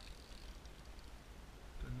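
Faint, steady background noise with a low rumble and no distinct events; a man starts speaking near the end.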